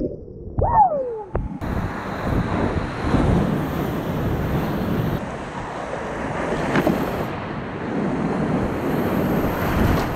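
Whitewater rapid rushing and splashing around a kayak, heard close from a camera on the boat, with wind buffeting the microphone. The sound is muffled for the first second and a half, where a brief falling tone cuts through.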